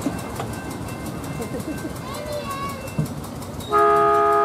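Murmur of people talking around the train, then near the end a miniature train's horn sounds one loud, steady multi-note blast.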